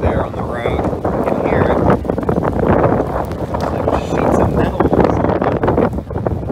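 Strong, gusty hurricane wind buffeting the microphone, a dense rushing noise with rain mixed in.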